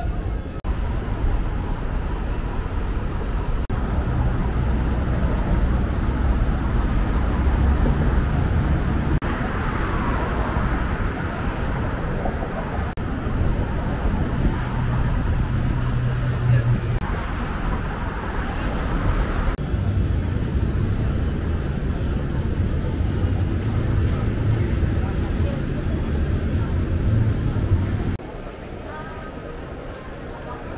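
City traffic ambience: a steady low rumble of road vehicles, with people talking nearby.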